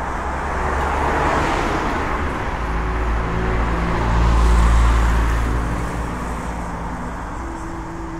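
Outdoor rumbling, hissing noise that swells twice and fades, with a deep rumble loudest about halfway through.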